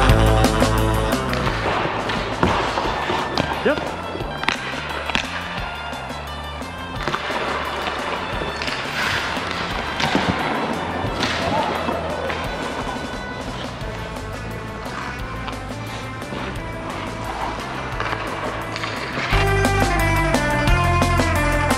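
Ice hockey skates scraping and carving on rink ice, with sharp cracks of sticks hitting pucks scattered through. Rock music plays at the start and comes back near the end.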